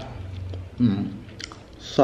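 A man chewing a mouthful of food, with a short 'mm' hum a little under a second in.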